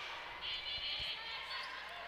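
Volleyball being served in an indoor arena, a single dull hit about a second in, over low crowd noise. A brief high tone sounds just before the hit.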